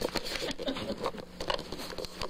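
Cat scrabbling in a cardboard box: a rapid, irregular run of light taps, scratches and rustles of claws on cardboard and paper.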